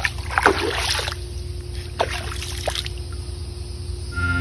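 A foot dipping and swishing in swimming-pool water, making a few small splashes: one near the start, then two more around two to three seconds in, over a steady low hum.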